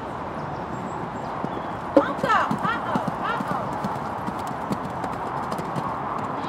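A horse cantering on sand footing: a run of hoofbeats, with a sharper thud about two seconds in.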